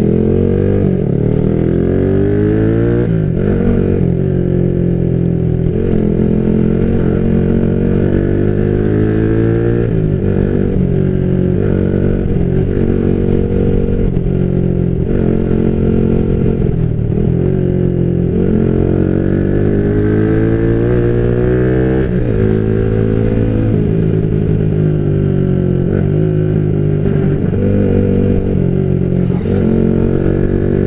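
Yamaha Jupiter MX single-cylinder four-stroke engine, bored up to 177 cc with a 62 mm piston, running under way. Its pitch climbs over a second or two and then drops back, again and again, as the rider accelerates and shifts or eases off.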